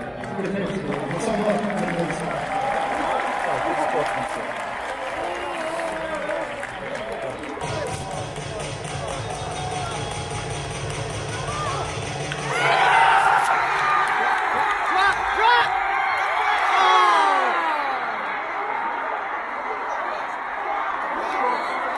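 Baseball stadium crowd: many voices chattering and calling out at once, swelling into louder cheering and shouting about twelve seconds in.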